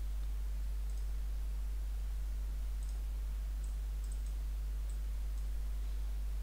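A steady low electrical hum with several faint computer mouse clicks scattered through it as plot cursors are moved.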